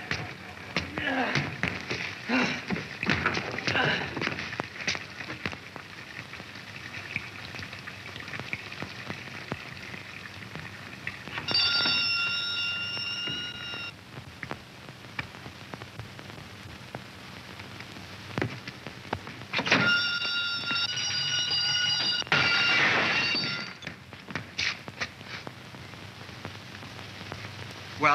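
Electric doorbell ringing: one steady ring of about two seconds, then after a pause several rings in quick succession, going unanswered. A scatter of knocks and thumps comes in the first few seconds.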